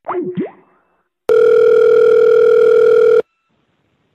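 Telephone line tone after a hang-up: a couple of quick sliding tones, then a steady tone held for about two seconds that cuts off suddenly.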